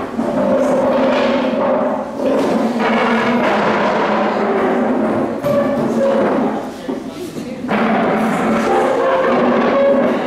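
Indistinct voices of several people talking over one another, with music alongside.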